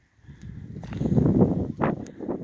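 Wind buffeting the microphone in uneven gusts, starting faintly just after the start and loudest in the second half.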